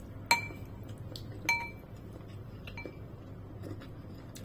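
A metal fork and soup spoon clinking against a bowl while eating noodle soup: two sharp clinks with a brief ring about a second apart, then a few lighter taps.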